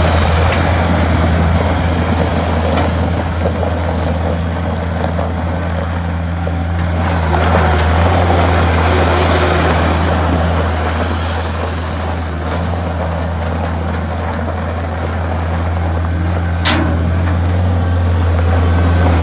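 New Holland LS160 skid steer loader's diesel engine running steadily with a strong low hum as the loader drives around, a little fainter in the middle as it moves off and louder again as it comes back. One sharp click near the end.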